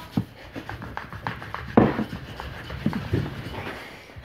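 Wooden rolling pin rolling pizza dough on a floured wooden board: rubbing strokes with irregular small knocks, the loudest knock a little under two seconds in.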